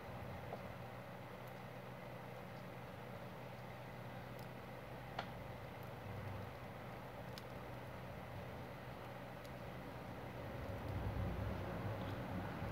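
Quiet room tone: a faint steady hum and hiss, with one small click about five seconds in.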